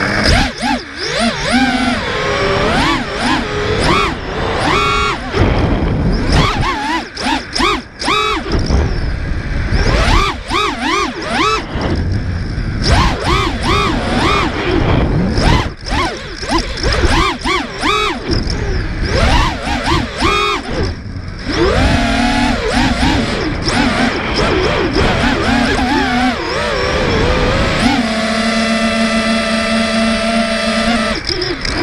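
The brushless motors and propellers of a 5-inch FPV racing quadcopter, heard from its onboard GoPro: a loud whine that starts abruptly as it takes off, then swoops up and down in pitch with quick throttle changes, settling into a steadier tone near the end.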